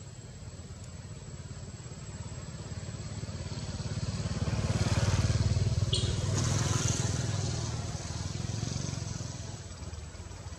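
A motor vehicle passing by: a low engine rumble that grows louder, peaks about halfway through, then fades away.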